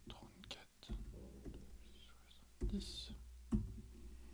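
A few keystrokes on a laptop keyboard entering a price, with low, half-whispered muttering and a few dull thumps.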